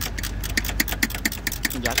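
Ratcheting 10 mm wrench clicking steadily, about seven clicks a second, as a long bolt is backed out of a metal bracket.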